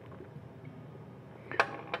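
Faint handling noise from a resonator guitar being turned around in the lap: a few light ticks over a low steady hum, with a sharper click near the end.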